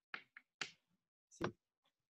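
Four faint, sharp finger snaps, scattered unevenly over about a second and a half, heard through a video-call connection. They are a show of appreciation after a speaker has finished.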